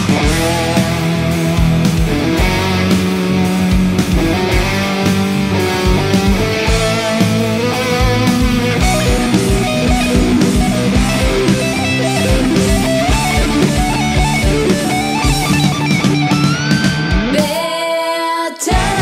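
Instrumental passage of a heavy rock song: distorted electric guitars over bass and drums, with a rising slide near the end.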